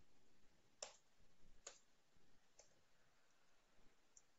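Near silence with three faint clicks of computer keys: two clear ones about a second apart, then a weaker third.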